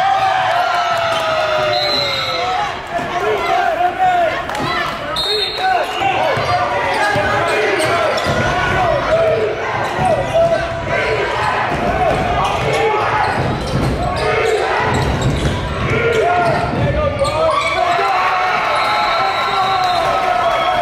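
Live basketball game sound in a gym: voices from the crowd and the bench, the ball bouncing on the hardwood, and sneakers squeaking in many short bursts as players cut and stop.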